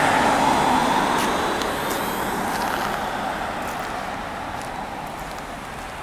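A car driving past on wet asphalt, its tyre hiss fading away over several seconds.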